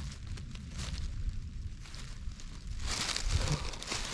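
Dry fallen leaves rustling and crackling as a hand pushes them aside around a porcino mushroom, getting louder near the end, over a low rumble.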